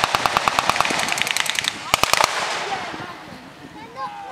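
Machine guns firing blanks in rapid continuous bursts, about ten rounds a second, breaking off a little before two seconds in; a few last shots follow, then the sound dies away.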